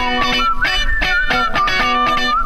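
Background music led by electric guitar: rhythmic strummed chords about four a second under a held lead note that bends slightly in pitch.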